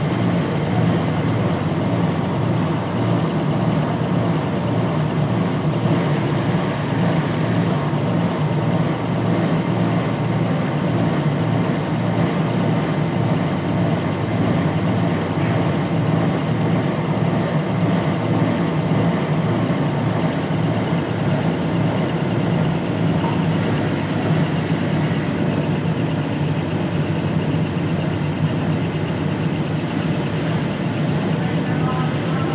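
Siruba industrial overlock sewing machine with a roller puller running steadily at speed while stitching piping cord: a continuous, even mechanical whir.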